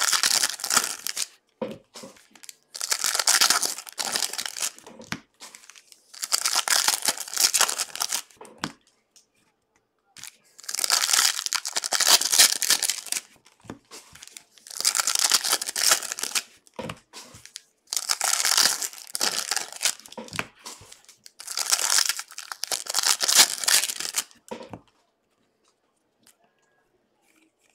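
Foil wrappers of football trading-card packs being torn open and crinkled, one pack after another: about seven bursts of crackling, each a second or two long, with short pauses between.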